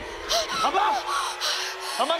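Alarmed human gasps and short breathy cries, three or four quick ones in a row, the pitch jumping up and falling away.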